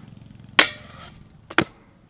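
Stunt scooter hitting a steel skatepark rail with a sharp metallic clank about half a second in, followed by a quick double knock about a second later as it comes back down onto the concrete.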